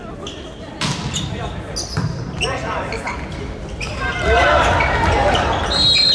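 Volleyball struck hard during a rally in a large indoor hall: two sharp hits about a second apart, then players' shouts and crowd cheering swell from about four seconds in.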